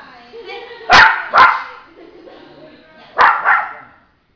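Puppy barking in two quick pairs: two sharp barks about a second in, and two more near the end.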